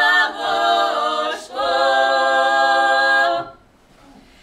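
Female vocal quintet singing a Ural comic folk song a cappella in close harmony, the voices moving together. A little over a second in they take a brief breath, then hold one long chord that stops about three and a half seconds in, leaving a short gap.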